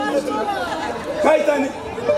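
A man's voice amplified through a microphone and loudspeakers, with crowd chatter behind it.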